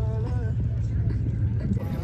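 Faint voices of people talking over a steady low rumble.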